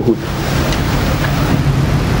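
Steady outdoor background noise, an even rushing hiss over a low hum, with no distinct events.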